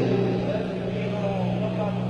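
Steady low electrical hum from the stage sound system, with indistinct voices talking faintly over it.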